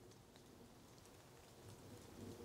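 Near silence: very soft drizzle on the woodland leaf canopy, with water dripping from leaf to leaf, barely audible.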